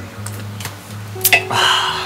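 Background music with a steady low note pattern; about one and a half seconds in, after a couple of sharp clicks, a man lets out a loud, breathy "ahh" after a swig of beer from a can.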